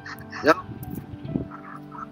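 A man's brief 'yep' heard over a video call, with faint steady background music underneath.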